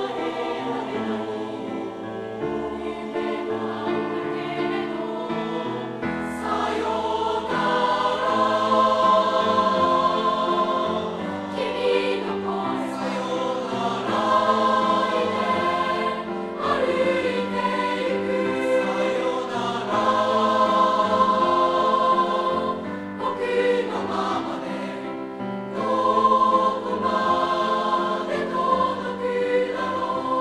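Mixed junior high school choir of girls' and boys' voices singing sustained phrases in harmony, accompanied by grand piano.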